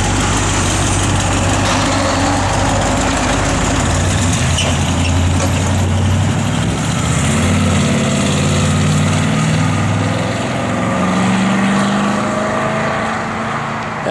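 A 1956 Chevrolet 3100 pickup's 350 cubic-inch V8 with dual exhaust, idling steadily at first, then pulling away, its note rising as it accelerates and getting quieter near the end as it drives off.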